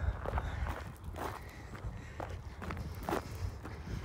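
Footsteps on dry dirt and gravel, several steps spaced about half a second to a second apart, over a low steady rumble.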